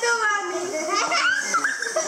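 Several children's voices calling out and talking over one another, with no break.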